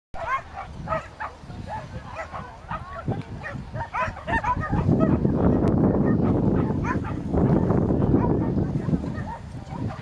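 A dog barking repeatedly in short, high calls, with people talking in the background. A loud low rumble fills the middle few seconds.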